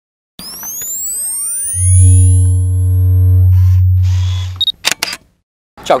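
Synthesized logo-intro sting: rising sweeps build into a deep bass hit held for about three seconds with a few higher tones over it. It ends in a quick run of sharp clicks.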